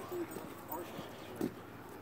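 Footsteps of people and a dog walking on an asphalt road, with a few faint, brief voice sounds, the clearest about a second and a half in.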